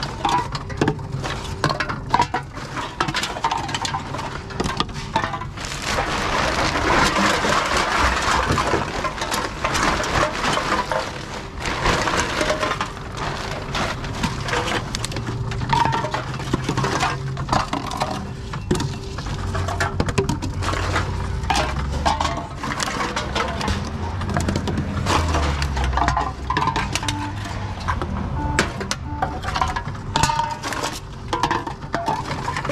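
Empty aluminium drink cans fed one after another into a reverse vending machine, clattering and clinking as they drop in and are taken away, with many sharp knocks throughout and the machine's motor humming and rumbling underneath.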